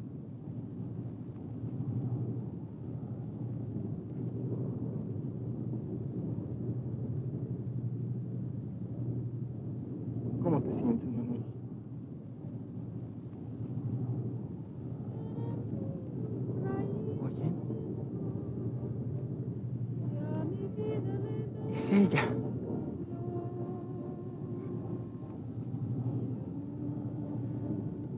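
Steady low drone of aircraft engines heard inside the cabin, with a few brief murmured voice sounds now and then, the loudest late on.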